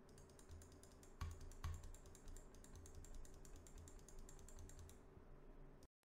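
Rapid, faint computer mouse clicks picked up by a desk-mounted Blue Yeti microphone with no noise gate applied, two of them louder a little after a second in, over a faint steady hum. The sound cuts off just before the end.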